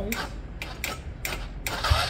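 Benelli Velvet scooter's electric starter motor turning over in a few short, weak attempts, with a longer try near the end: the battery is too weak to crank it.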